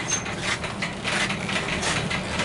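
Irregular light knocks, clicks and rustles of people moving about inside a caravan, footsteps on the van floor and handling of fittings, over a steady low hum.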